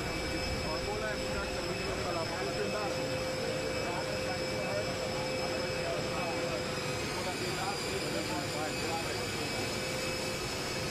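Jet aircraft engines running on an airport tarmac: a steady whine with several high tones over a constant rush, with indistinct conversation underneath.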